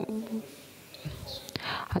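A speaker's short hesitant 'uh', then a pause with a breath drawn in before the talk resumes.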